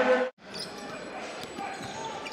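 Live basketball court sound in a large arena: a ball bouncing on the hardwood with scattered court noise under a quiet crowd. About a third of a second in, louder commentary and crowd sound cuts off abruptly at an edit and the quieter court sound follows.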